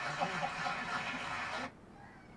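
Faint audio from the performance video being played: an even, hissy haze with a few faint tones, which cuts off suddenly near the end.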